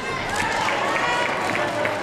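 Indistinct chatter of people in a large hall, several voices talking with no clear words.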